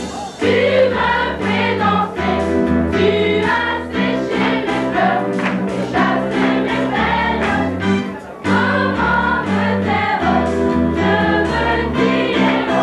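A choir singing a gospel song with instrumental backing: a sustained bass line and a steady beat under the voices, with a short break between phrases about eight seconds in.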